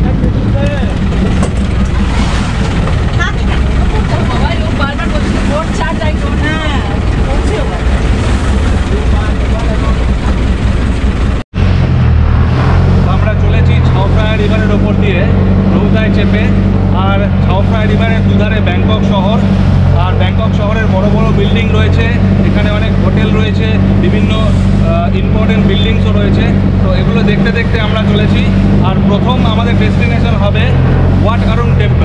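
River boat engine running under way, a steady low drone with water and wind noise. The sound drops out briefly about eleven seconds in, and the drone is stronger after that.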